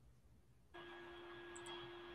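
Near silence; just under a second in, a faint steady hum and hiss come in with a thin constant tone, holding until speech resumes.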